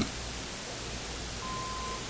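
Steady hiss over a low hum: the background noise of an old recording, heard in a gap in the narration. Near the end a brief, faint, steady beep-like tone sounds for about half a second.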